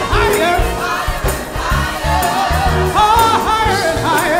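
Gospel praise team singing live, a male lead voice with backing singers, over instrumental accompaniment with a steady beat.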